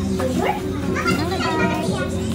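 Background chatter of several people, children's high voices among them, over a steady low hum.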